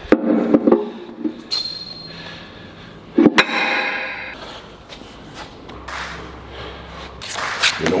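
Steel strongman shield clanking as a weight plate is handled on it, the loudest a sharp double knock about three seconds in that rings briefly like struck metal.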